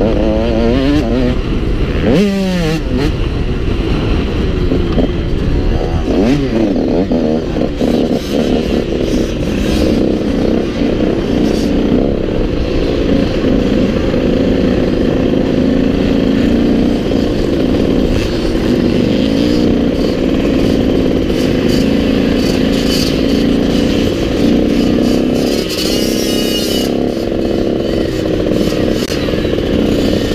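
Motocross bike engine running close up as it is ridden on a dirt track, its pitch rising and falling with the throttle in the first several seconds, then holding a steadier note, with another rise in pitch near the end.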